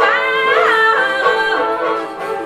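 A woman singing in a full voice, holding long notes with a quick swoop in pitch a little past half a second in, over a plucked long-necked lute.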